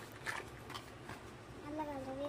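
A plastic box and a backpack being handled, with a few light clicks and rustles, then a short wavering hum of a voice near the end.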